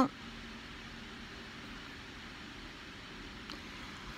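Quiet steady background noise with a faint low hum, and one faint click about three and a half seconds in.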